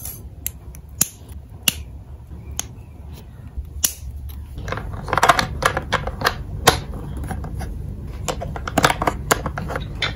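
Small curved scissors snipping plastic toy parts off a sprue, a few sharp separate snips; about halfway through the sound turns to denser clicking and rattling of hard plastic toy pieces being handled and fitted together.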